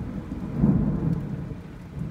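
Heavy rain on a vehicle's roof and windshield, heard from inside the cab, with a low rumble of thunder that swells about half a second in, over a steady low hum.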